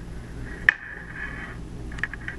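A single sharp plastic click about two-thirds of a second in, from fingers working wire conductors into a clear RJ45 modular plug, over a faint steady low hum.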